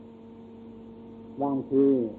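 A steady electrical hum runs under an old recording of a talk. About a second and a half in, a man's voice resumes speaking Thai over it.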